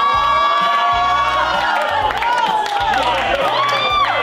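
A roomful of people exclaiming together in a long, drawn-out 'ooh' of amazement, many voices overlapping and cheering, some sliding up in pitch near the end.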